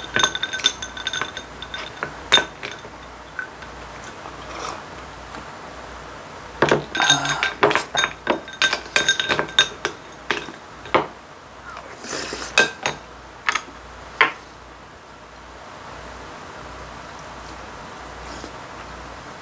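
Metal spoon clinking and scraping against a ceramic rice bowl as rice is stirred into water, each strike ringing briefly. A few clinks come in the first seconds, then a quick run of them from about seven to fourteen seconds in.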